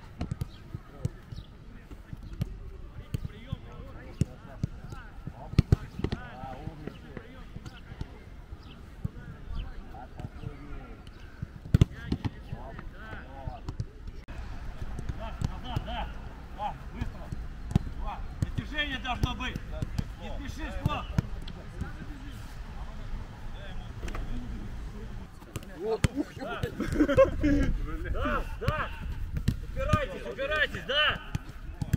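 Footballs being kicked on a grass pitch: sharp thuds of boot on ball at irregular intervals, the loudest a few seconds in and again about halfway. Voices calling out across the pitch in the background, louder near the end.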